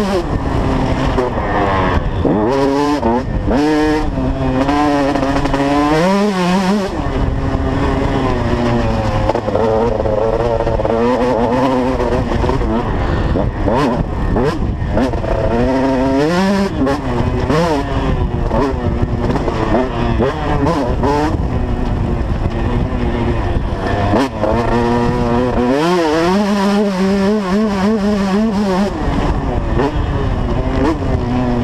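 KTM 150 SX two-stroke motocross bike ridden hard, its engine revving up and down the whole time: the pitch climbs steeply and then falls back at each gear change and each time the throttle is closed, over a steady rush of wind on a helmet-mounted camera.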